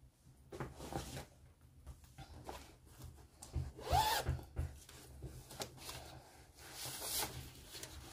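Handling noises as a stitching project and its chart are fetched: scattered light clicks, rubs and rustles, with a short rising sound about four seconds in.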